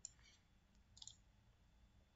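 Near silence with faint computer mouse clicks, the clearest a brief cluster about a second in.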